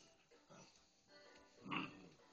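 Six-week-old puppies crying in short calls while they tussle together, the loudest cry coming near the end.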